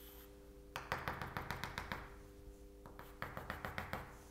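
Chalk tapping out short strokes of a dotted line on a blackboard: two quick runs of faint, sharp taps, the first about a second in and the second near the end.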